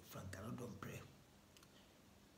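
A man's voice speaking quietly for about a second, then a pause.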